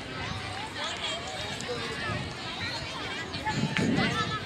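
Many students' voices calling and chattering at once across an open ground, overlapping with no single speaker standing out. A brief low thump near the end.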